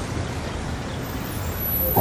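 Street traffic noise with a motor vehicle engine running steadily.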